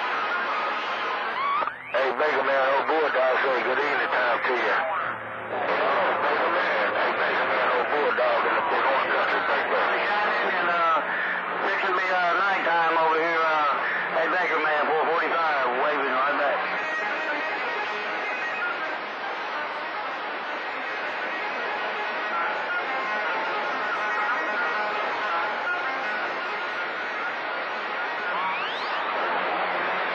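CB radio receiving long-distance skip on channel 28: several garbled, overlapping voices and warbling tones mixed with static. The audio cuts out briefly twice near the start.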